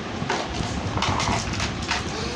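Plastic food container lids being pulled off and set down on a glass tabletop: a few short clicks, knocks and clattering sounds.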